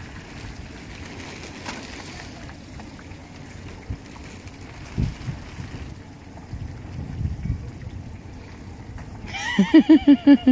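A whole turkey deep-frying in a pot of hot oil over a propane burner: a steady rushing and bubbling, with a few low thumps.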